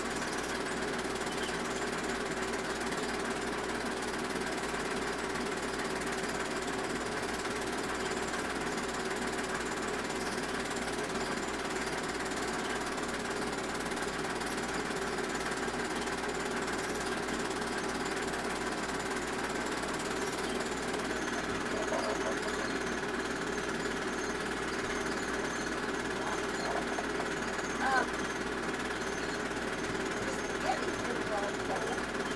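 Film projector running, its mechanism making a steady, even clatter while old home-movie film is projected.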